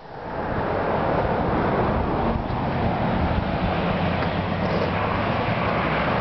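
Steady outdoor rushing noise, swelling over the first second and then holding level, with a faint low hum underneath.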